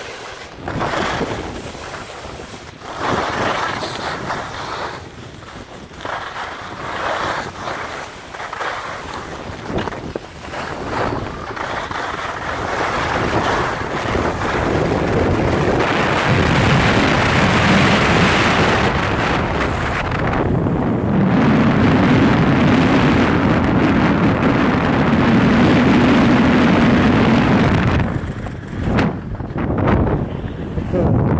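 Wind rushing over the microphone of a camera carried by a skier moving downhill, mixed with the hiss and scrape of skis on snow through the turns. It surges unevenly at first, becomes louder and steadier from about halfway with a low buffeting rumble, then eases off shortly before the end as the skier slows.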